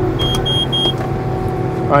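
Claas Jaguar forage harvester running steadily, heard from the cab, with three short high beeps of the cab alarm in the first second. The metal detector has picked up metal in the swath.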